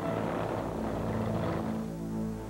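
A light single-engine propeller plane's engine running with a steady, even hum.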